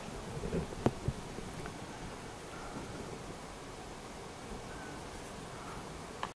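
A single sharp click about a second in, followed by a fainter click, over faint rustling and low hiss.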